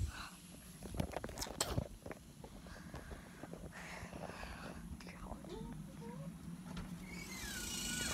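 Handling noise from a handheld phone being carried: a few sharp knocks and rubs in the first couple of seconds, then a low steady background with faint, indistinct voices.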